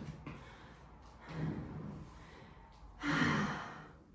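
A woman breathing hard after vigorous dance exercise: a few heavy, audible breaths and sighs, the loudest about three seconds in.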